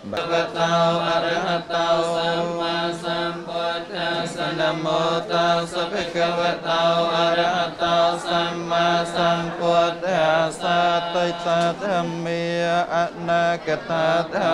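Buddhist monks chanting together in unison: a continuous recitation on one steady low pitch with a regular rhythmic pulse.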